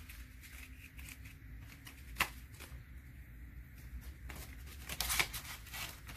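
Paper dollar bills being handled and folded: soft rustling with scattered crisp snaps. A sharp click comes about two seconds in, and the loudest rustling comes near the end.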